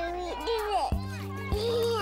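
Children's voices chattering, with music coming in about a second in: sustained bass notes and a steady beat.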